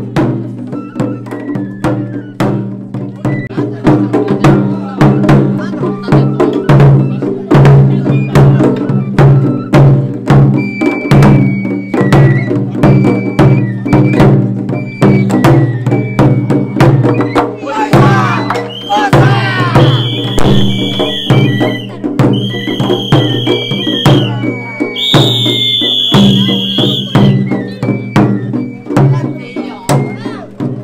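Japanese festival float music: a taiko drum beaten in a quick, steady rhythm with short high held notes over it. In the second half, several long, high calls ring out over the drumming.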